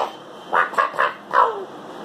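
A person laughing in three or four short bursts.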